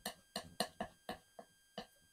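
Oil paint being mixed on a palette: a run of short, soft taps, about seven in two seconds.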